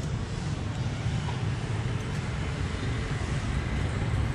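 Road traffic ambience: a steady low rumble of passing vehicles on the street.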